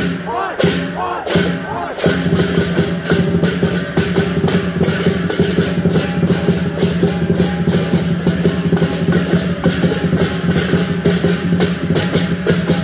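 Chinese lion-dance percussion: many pairs of brass hand cymbals clashed together in a fast, steady rhythm, several strikes a second, over a sustained low ringing tone. The playing grows fuller and louder about two seconds in.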